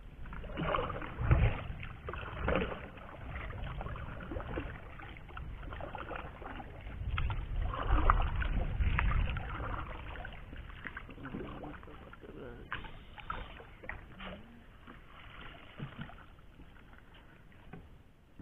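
Water splashing and dripping around a small paddled boat as the paddle works the water and a wet cast net is hauled in, with scattered knocks on the hull. Heavier low rumbles come about a second in and again around eight seconds in.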